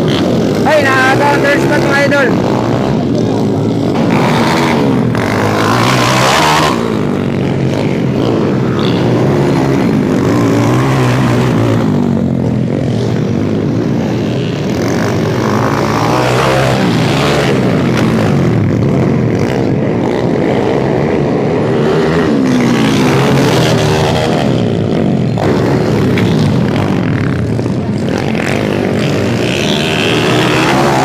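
Several small dirt-bike engines revving and accelerating, their pitch climbing and dropping again and again as the bikes race. Voices are mixed in.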